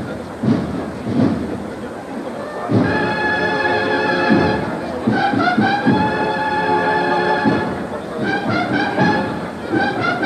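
Brass band playing a slow processional march. It comes in about three seconds in with long held chords, over crowd murmur.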